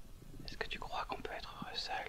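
A person whispering a short question.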